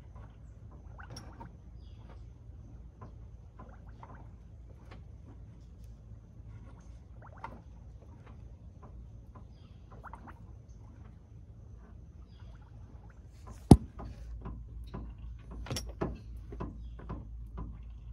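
Faint scattered ticks and handling noise over a low hum, then one sharp metallic click about fourteen seconds in and a smaller one about two seconds later, as the pickup truck's door is opened to get into the cab.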